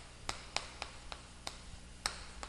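Chalk tapping and scraping on a blackboard as characters are written. It comes as a series of faint, sharp clicks, about three a second, at uneven spacing.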